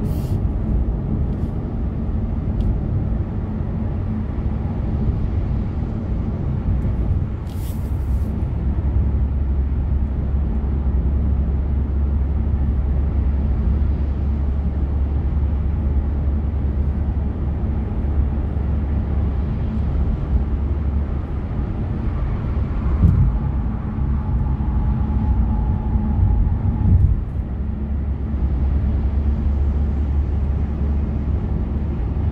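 Car cabin noise while driving at expressway speed: a steady low rumble of road and engine, with a couple of short clicks.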